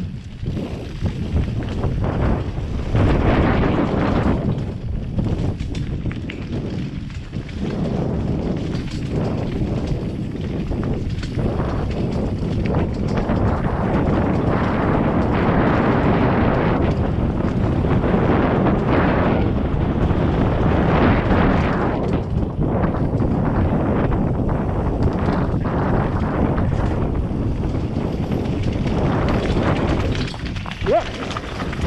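Wind rushing over a helmet-mounted action camera's microphone during a fast mountain-bike descent of a rocky trail. Constant rattle and knocks run through it from the 2017 Scott Gambler 720 downhill bike's tyres striking rocks and its frame and drivetrain chattering.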